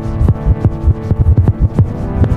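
Downtempo electronic trip-hop music: held synth chords under a busy beat of electronic drum hits, several a second, each dropping in pitch.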